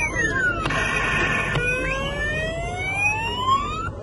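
Happy Baby claw machine's electronic sound effect for the dropping claw: a whistle-like tone slides down, a short buzzy tone sounds about a second in, then a long rising tone climbs and cuts off near the end.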